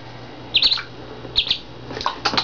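Orphaned duckling peeping: two short bursts of high, quick peeps, a little under a second apart.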